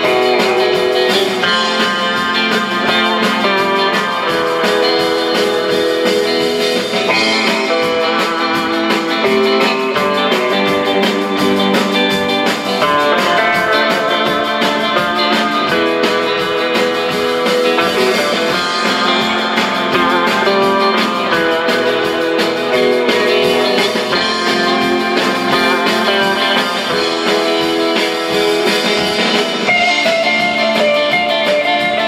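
Live traditional rautalanka instrumental: an electric guitar plays the lead melody over rhythm guitar, bass guitar and drums, continuously.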